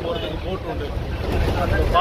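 Steady low rumble of a moving bus's engine and road noise, heard from inside the cabin, with wind through the open windows.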